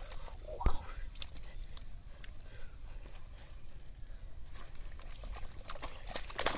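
Wet mud squelching and shallow water sloshing as thick mud is shaken out of a sack and trodden underfoot, with a sharp knock about a second in.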